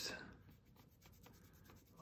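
Faint, light scratching of a small stiff paintbrush being stroked and scrubbed over the painted head of a carved decoy.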